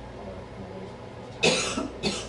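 A person coughing once, hard, about one and a half seconds in, over a low steady room hum.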